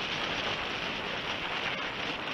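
Steady rush of air over the onboard camera of a Multiplex Heron RC glider as it glides and descends, with no motor sound.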